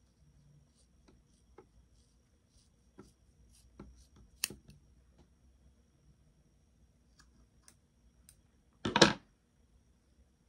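Hair-cutting shears snipping through wet hair: a run of short, quiet snips and clicks with gaps between them, one sharper click about halfway through. A louder burst of noise lasting under half a second comes near the end.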